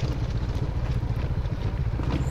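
Off-road motorcycle engine running steadily with a low, fluttering rumble as the bike rolls down a loose, rocky mountain road.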